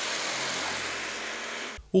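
A car passing on a wet road, its tyres hissing on the wet asphalt; the hiss swells slightly and fades, then cuts off abruptly near the end.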